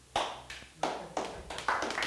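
A few scattered hand claps from a small audience in a room, irregular and uneven, starting just after a moment of quiet.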